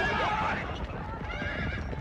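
Horses whinnying over a low rumble of galloping hooves, with one call near the start and another about a second and a half in.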